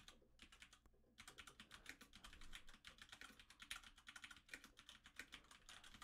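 Faint typing on a computer keyboard: a quick, uneven run of keystrokes, with a short pause about a second in.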